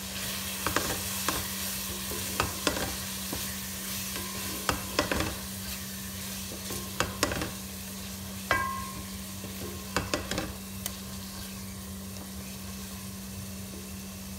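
Onion, ginger-garlic and spice masala sizzling in oil in a metal pot while a wooden spatula stirs it, with irregular knocks and scrapes of the spatula against the pot.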